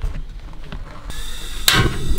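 Portable butane cartridge stove being lit: gas hisses steadily from about a second in, then a sharp, loud click-pop near the end as the igniter fires and the burner catches.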